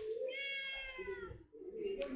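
Tabby-and-white stray cat meowing: one long meow that dips slightly in pitch at its end.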